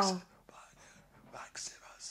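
A drawn-out spoken "wow" trailing off in the first moment, then faint whispered, breathy sounds about a second and a half in.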